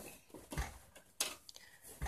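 A small toy being handled: two soft clicks and faint rustling.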